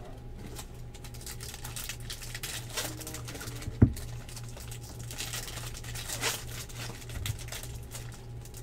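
Hands handling trading cards and foil card packs: a patter of small clicks and crinkles, with one sharper knock about four seconds in. A steady low hum lies underneath.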